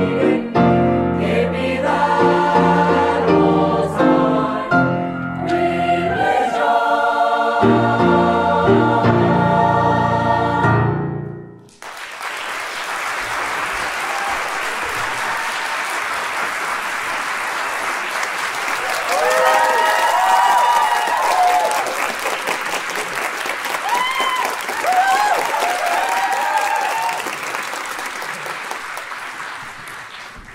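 A mixed high school choir sings the closing bars of a song with accompaniment, holding a final chord that cuts off about twelve seconds in. An audience then applauds steadily for the rest of the time, with a few cheering shouts in the middle.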